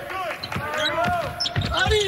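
A basketball being dribbled on a hardwood court, with sneakers squeaking as players cut and move. The strikes come thickest near the end.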